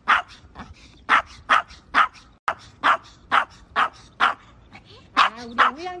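A Maltese dog barking in short, sharp yaps about twice a second, protesting at riding in a pet stroller. Near the end the barks turn into a longer whining yelp that wavers in pitch.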